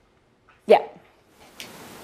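A woman's single short spoken "yeah" about a second in, falling in pitch; otherwise quiet room tone, with faint hall noise rising near the end.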